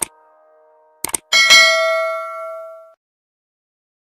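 Subscribe-button animation sound effects: a click, then a quick double mouse click about a second in, followed by a bell ding that rings out for about a second and a half.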